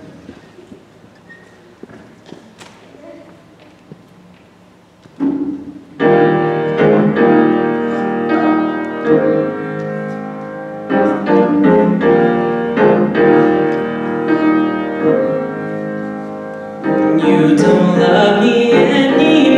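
A stage keyboard playing piano chords. The first five seconds are only faint room noise and small clicks. A single chord sounds about five seconds in, and a steady intro of struck chords begins about six seconds in, growing louder near the end.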